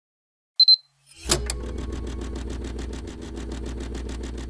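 Logo intro sound effect: a short high beep, then a sharp hit that settles into a steady, rapid ticking over a low hum, about ten ticks a second.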